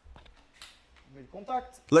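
A few faint clicks from the motorcycle's right-hand handlebar switchgear, as the engine stop switch is checked in the run position.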